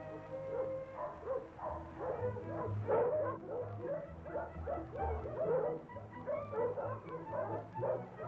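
Several kennel dogs barking in a rapid, continual run, over orchestral film music.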